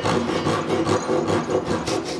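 Handsaw cutting down into the end of a solid-wood tabletop to saw the side of a tenon, in repeated back-and-forth strokes of the blade through the wood.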